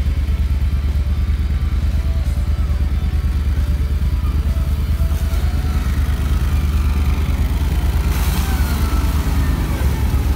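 Eight-wheeled amphibious ATV's engine running steadily as it crawls through a muddy bog toward the listener, with a louder rush of noise about eight seconds in as it pushes through wet ground and grass.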